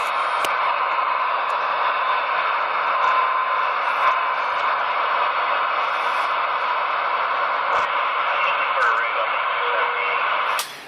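CB radio receiver hissing steadily with static through its speaker, an even rushing noise with a faint whistle in it and some faint warbling near the end.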